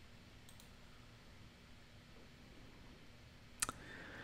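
Faint room tone, then a computer mouse clicking twice in quick succession near the end.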